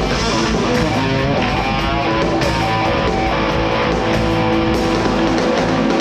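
Live rock band playing loud, with two electric guitars carrying the passage and notes held through the middle of it.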